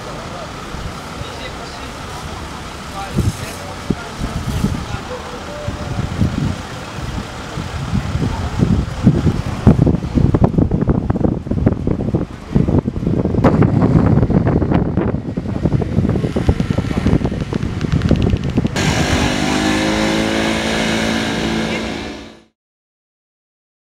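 Street sound of people talking and car traffic. From about ten seconds in, heavy, gusty rumble of wind buffeting the microphone.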